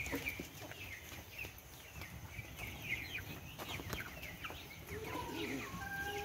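Young chicks peeping: a busy, continuous run of short, high, falling cheeps from many birds. Some lower calls come in near the end.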